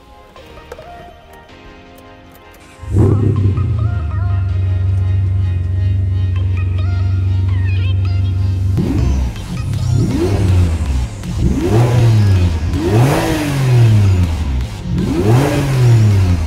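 Ferrari 550 Maranello's 5.5-litre V12 cold-started: it catches suddenly about three seconds in and runs at a steady fast cold idle. From about nine seconds it is revved over and over in short blips, each rising and falling in pitch.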